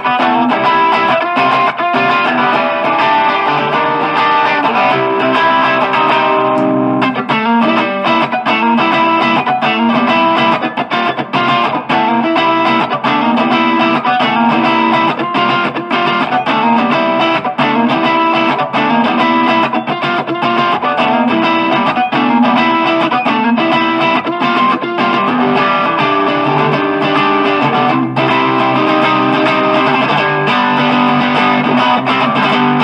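Electric guitar, an Encore Strat, played continuously through a Marshall MG 4x12 cabinet loaded with four 12-inch Celestion speakers.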